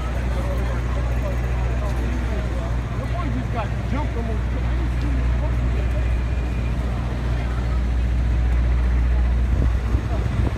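City street ambience at a busy intersection. Passers-by talk over a steady low hum of traffic.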